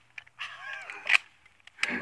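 A man's laughing, voice-like sound, ending in a sharp click about a second in.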